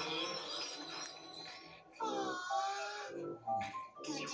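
Cartoon soundtrack played from a TV: background music for the first two seconds, then wordless, wavering cartoon voice sounds over the music.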